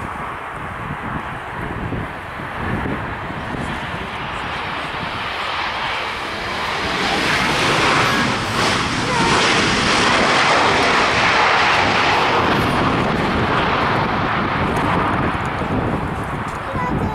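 Jet noise from a Boeing 737-800's CFM56 turbofan engines as it lands and rolls out close by, building to its loudest from about seven to thirteen seconds in as it passes, then easing a little.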